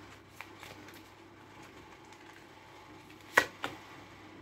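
Oracle cards being handled and shuffled in the hands: quiet rustling and faint ticks, with a sharp click a little over three seconds in and a smaller one just after as a card is pulled from the deck.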